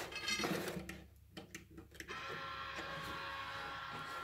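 Mechanism of a day-and-night roller blind: a short mechanical rattle and a few clicks. About halfway through, a steady drone of several held tones begins and keeps going.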